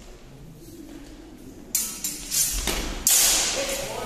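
Steel training swords clashing in a fencing exchange: a few sudden metallic hits from a little under two seconds in, the loudest just after three seconds, which rings and fades.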